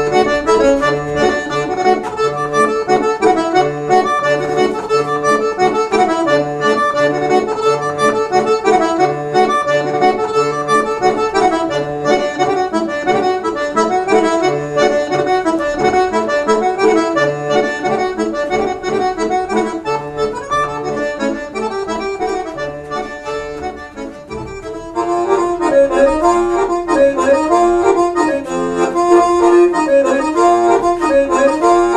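Accordion music: a sustained melody over a regular pulse of bass notes. It dips briefly near the end, then comes back in fuller and louder.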